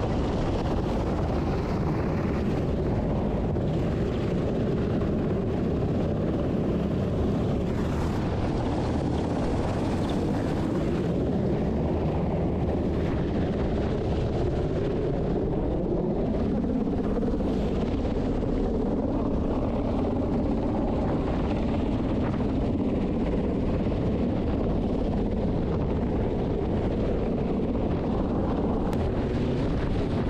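Helicopter hovering close overhead: a steady, loud rotor and engine roar, with rotor downwash buffeting the microphone. Its tone slides up and down a little partway through.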